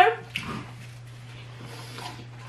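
The tail of a drawn-out spoken word cuts off right at the start, then quiet room tone with a steady low electrical hum and a brief click about half a second in.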